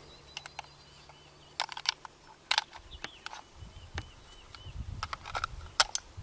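Scattered sharp clicks and rustles of rifles and gear being handled, with a few faint high bird chirps and a low wind rumble on the microphone from about halfway.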